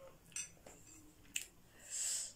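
A metal fork clicking lightly against a glass bowl of noodles: a few soft touches and one sharp click about a second and a half in.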